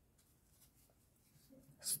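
Faint soft rustling of a crochet hook drawing thick yarn through stitches while single crochet is worked. A spoken word begins right at the end.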